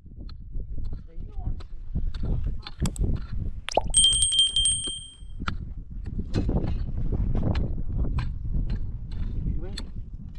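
A digging tool knocking and scraping in stony soil while a hole is dug, with low voices. About four seconds in, a click and a bell chime ring out for about a second and a half, the sound effect of a subscribe-button overlay.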